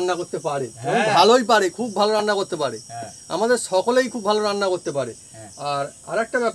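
A man talking, with crickets chirping steadily in the background.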